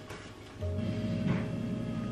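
Background music: a sustained low chord comes in about half a second in and holds steady.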